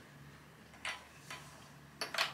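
Near-quiet room with two faint, short handling sounds about a second apart, from fabric quilt pieces being lined up and flipped by hand.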